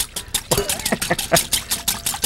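Metal spoon clicking and scraping against a glass mixing bowl in rapid, irregular taps as chunks of marinated pike are gently stirred.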